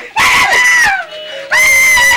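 A woman screaming in two long, high-pitched held cries. The first falls away in pitch about a second in, and the second starts about half a second later.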